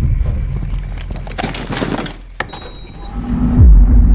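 Film-trailer sound mix with no dialogue: a low rumble with a few sharp knocks and rustles, then a low held tone and a deep falling sweep near the end.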